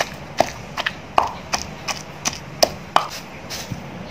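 Wooden pestle pounding a moist herb paste in a mortar, in a steady rhythm of about two to three dull strikes a second.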